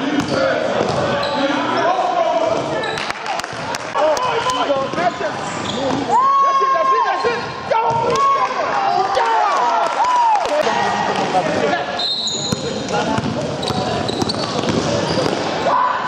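Live basketball play in a sports hall: players' and spectators' voices calling out all through, one call held long about six seconds in, over the knocks of the ball bouncing on the court.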